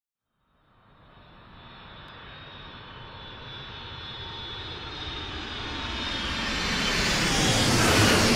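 Jet airliner engines approaching, as in a flyby: a high turbine whine over a roar that fades in from silence and swells steadily, loudest near the end.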